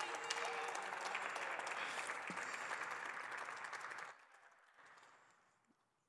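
Applause from the senators in the chamber, many hands clapping for about four seconds before it stops quickly.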